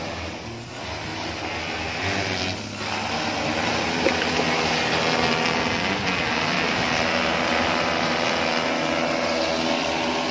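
Large six-rotor agricultural spraying drone, its propellers making a loud, steady whir as it lifts off and flies low. The sound builds over the first couple of seconds, then holds steady.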